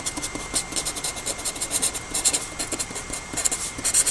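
A pen writing on paper by hand: a quick, irregular run of short scratchy strokes.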